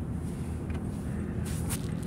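Steady low road rumble of a moving car heard from inside the cabin, with a brief scratchy rustle near the end.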